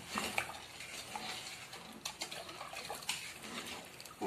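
A spoon stirring grated green papaya in hot water in a stainless steel pot, with scattered clinks and scrapes against the pot.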